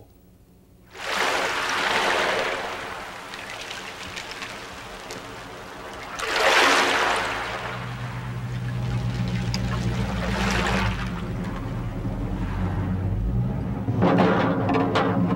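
Water lapping and washing in slow surges that swell and ebb about every four seconds. From about halfway a low steady hum comes in underneath.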